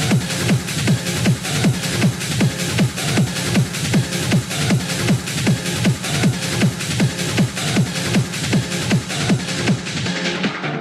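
Hard techno (schranz) DJ mix: a steady four-on-the-floor kick drum, a little over two beats a second, each kick dropping in pitch, under dense, busy hi-hats.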